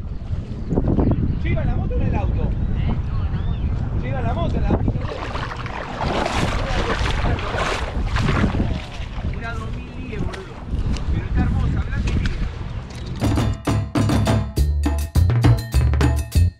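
Wind rumbling on the microphone with indistinct voices in the background. About thirteen seconds in, background music with a steady percussive beat and heavy bass starts.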